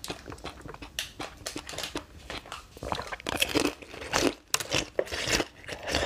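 Frozen basil-seed ice being bitten and chewed close to the microphone: irregular sharp crunches and crackles, several a second, as the ice breaks between the teeth.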